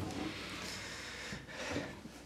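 Soft rustling handling noise as a cello is lifted and laid across a seated player's lap, with a soft bump near the end as it settles on his thighs.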